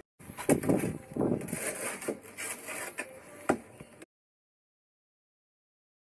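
Steel trowel scraping mortar and knocking a concrete block down into its mortar bed, with several sharp knocks among the scraping. The sound cuts off to complete silence about four seconds in.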